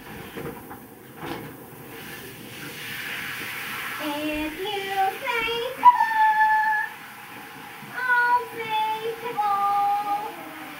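A child singing a wordless tune in a high voice, with long held notes that step up and down, starting about four seconds in and resuming after a short pause near the end.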